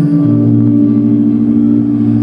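Live indie post-rock band holding a sustained chord: long ringing notes with no drum hits, the low bass note stepping down just after the start.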